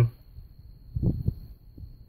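A pause with a few faint low thumps: two close together about a second in, and a softer one near the end.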